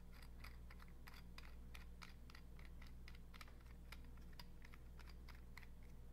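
Faint, irregular clicking and ticking, several clicks a second, as a 3D-printed plastic threaded barrel part is twisted by hand into the threads of a Spyder paintball marker, over a low steady hum.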